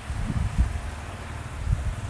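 Wind buffeting a handheld camera's microphone: an uneven low rumble with a few dull knocks about half a second in.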